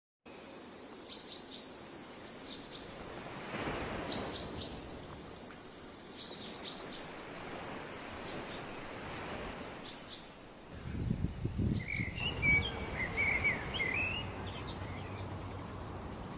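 Birds calling outdoors: a short high call repeated every second or two, with a second bird's more varied chirping joining about twelve seconds in. A low rumble sits underneath from about eleven seconds in.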